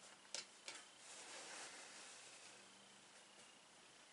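Faint rustle of fabric being smoothed by hand across a padded pressing table, with two short taps close together near the start.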